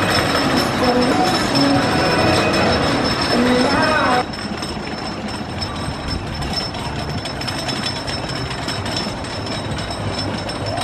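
Wooden roller coaster train clattering up the chain lift hill, with voices over it. About four seconds in, the sound drops suddenly to a quieter, steady rattling rumble of the coaster running on its wooden track.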